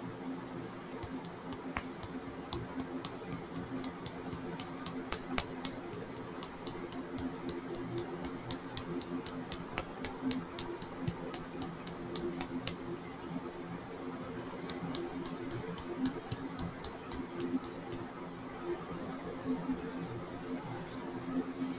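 Faint, quick, light ticking, about three a second, from a small plastic funnel being tapped and worked in the neck of a glass nail polish bottle to get mica powder through; the ticking pauses for a couple of seconds past the middle and then resumes. A low steady room hum runs underneath.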